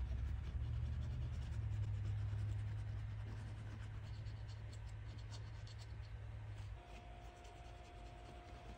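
Cotton swab rubbing and scratching over the scaled surface of a cast artificial canvasback duck foot, wiping thinned black paint off to antique it: a run of faint quick scratches. A low steady hum sits underneath and stops near the end.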